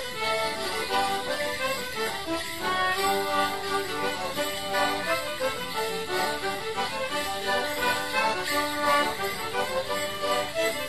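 Live traditional English Morris dance tune played on melodeon and fiddle, with the jingling of the dancers' leg bells in time with their steps.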